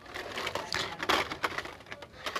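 Hot Wheels blister-card packages clicking and crackling as a hand flips through them on the store pegs, with a quick run of irregular plastic-and-card clicks.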